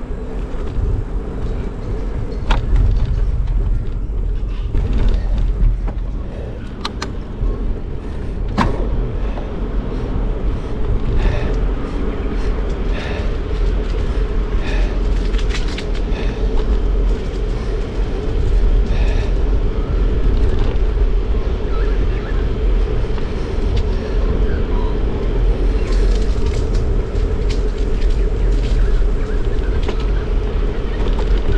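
Riding noise from a bicycle on an asphalt bike path: steady wind rumble on the mounted camera's microphone and tyre and frame noise, with a few sharp clicks and rattles in the first nine seconds.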